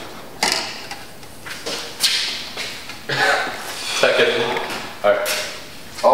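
Red plastic party cups knocked together and slid across a tabletop as they are regrouped, with a few sharp clacks in the first two seconds. Voices follow near the end.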